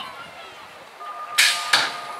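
BMX start-gate electronic tone: one steady beep held for over a second, with two sharp clattering hits during it as the gate drops.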